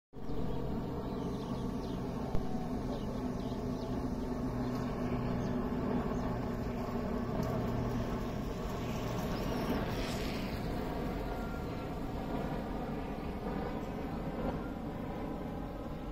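PZL M-28 Skytruck twin-turboprop aircraft flying high overhead, its engines and propellers making a steady hum. A single sharp click comes a little over two seconds in.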